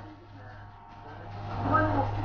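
Indistinct voices over a steady low hum. The voices fade in the first second, then come back louder near the end.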